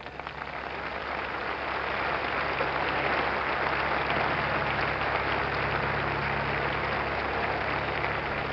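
Large stadium crowd applauding, swelling over the first couple of seconds and then holding steady.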